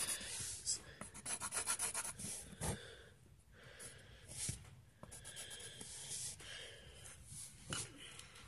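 Graphite pencil scratching on paper in short, quick strokes, with a brief pause a little after the middle before the strokes resume.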